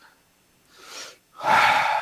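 A person breathing: a faint breath about a second in, then a louder, longer in-breath near the end.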